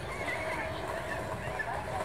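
Indistinct voices in an outdoor crowd, with strong wind buffeting the microphone as a steady low rumble.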